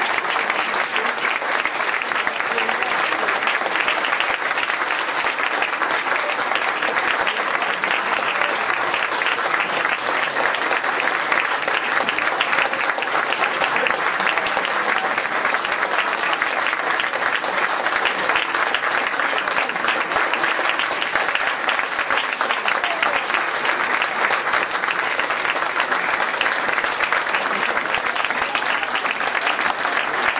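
Audience applauding: steady, dense clapping from many hands.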